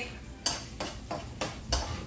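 Kitchen knife chopping on a cutting board: five sharp knocks, about three a second.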